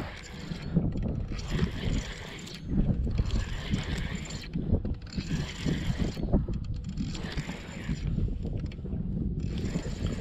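Spinning reel being cranked in spells of a second or two with short pauses, as a hooked fish is reeled in, over a low rumble.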